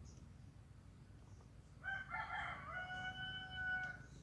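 A rooster crowing once, starting about two seconds in: a few rough, broken notes, then one long held note that stops just before the end.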